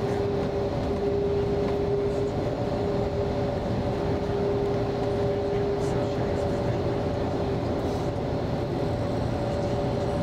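Steady cabin noise of a coach bus driving through a road tunnel: engine and tyre rumble with a steady two-note hum.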